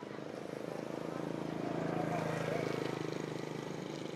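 A motor vehicle's engine running steadily, growing louder to a peak about two and a half seconds in and then fading as it passes.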